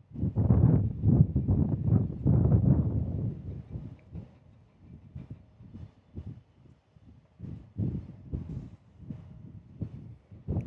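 Gusting wind buffeting the microphone: loud, choppy low rumbling for the first three seconds, then dropping away to short scattered gusts.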